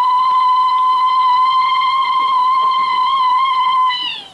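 A woman's zaghrouta (ululation) of joy: one long, high, steady call that falls in pitch and dies away at the very end.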